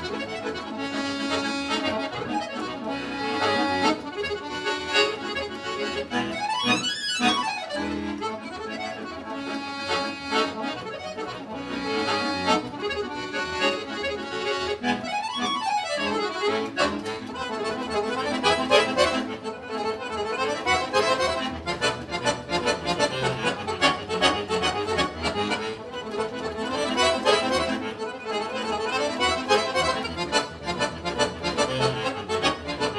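Scandalli piano accordion played solo: a fast piece with full chords and quick runs, twice sweeping up to high notes and straight back down.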